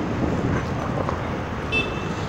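Small single-cylinder Honda motorcycle engine running steadily at low revs close by, barely throttled as the learner creeps along with too little throttle.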